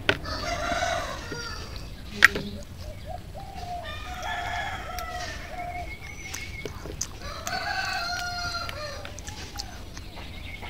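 A rooster crowing three times, each a long drawn-out call, with a single sharp click about two seconds in.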